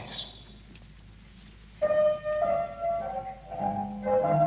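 Upright piano played: after a short quiet pause, single notes and chords begin about two seconds in at an unhurried pace, each note ringing on.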